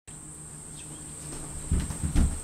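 Steady high-pitched buzz of insects, with a few low thumps near the end.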